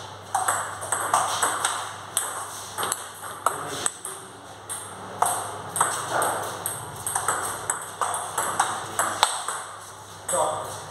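Table tennis balls clicking off bats and bouncing on tables, several sharp, ringing clicks a second at an irregular pace, from rallies at two tables at once. A low steady hum runs beneath.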